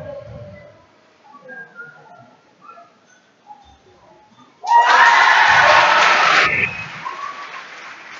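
Spectators cheering for a made free throw, starting suddenly and loudly about five seconds in. After about two seconds the cheer drops to a lower, continuing crowd noise.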